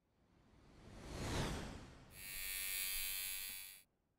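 Title-sequence sound effects: a whoosh that swells up and falls away, then a steady buzz for about two seconds that cuts off suddenly.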